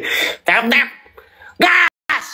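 A man's short wordless vocal outbursts with brief pauses between them, the loudest a short shout near the end.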